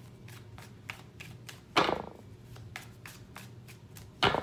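A deck of tarot cards being shuffled by hand: a run of light card clicks, with one louder rush of cards about two seconds in.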